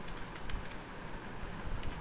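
Computer keyboard keys being pressed as a short date is typed into a spreadsheet: a few separate key clicks, spread unevenly.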